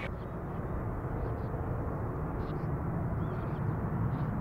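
Steady low rumble of distant jet aircraft across an airfield, with a faint steady hum above it.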